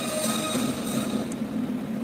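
Mi-17 helicopter's turbine engines whining steadily, several high held tones over a low hum, heard in news footage.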